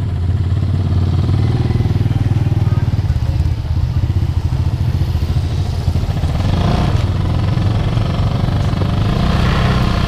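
Small motorcycle engine running steadily on the move. About six to seven seconds in, a motorcycle tricycle with a sidecar passes close by.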